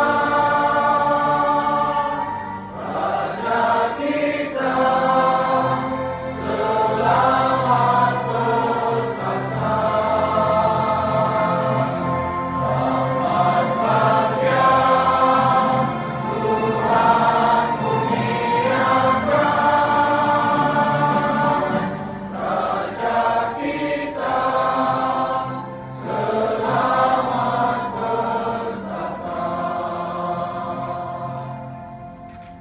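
A choir singing an anthem with musical accompaniment, in sung phrases with short breaks between them.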